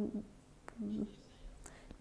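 A pause in a woman's speech: a faint murmured voice sound right at the start and again about a second in, with one small click between them.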